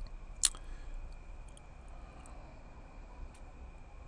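A single sharp click about half a second in, followed by a few faint ticks, over a low steady hum and a faint steady high tone.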